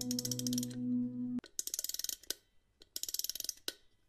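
Soft background music with held tones that cuts off about a second and a half in, followed by two short bursts of rapid mechanical clicking, each under a second long.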